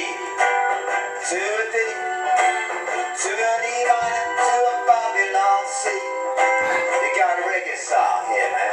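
Acoustic guitar strummed in a steady rhythm while a man sings or vocalises along. The sound is thin, with no low end.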